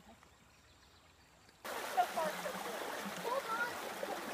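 Quiet at first; then, about one and a half seconds in, shallow river water rushing over rocks starts suddenly and runs steadily, with high voices calling over it.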